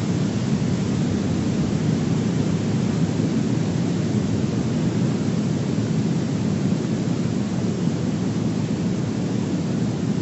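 A steady, loud low rumble of noise with no distinct claps or breaks.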